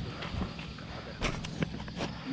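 Trek Marlin 7 hardtail mountain bike rolling down a bumpy dirt trail, its frame and drivetrain rattling with scattered knocks over the rough ground and a low rumble of tyres. The loudest knocks come a little past halfway.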